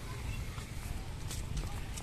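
Footsteps on stone paving slabs, a few sharp steps, over a steady low rumble.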